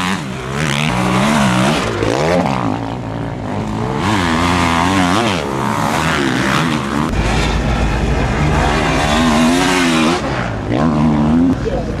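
Motocross dirt bikes racing past on a snowy track, their engines revving up and down again and again as the riders accelerate and change gear.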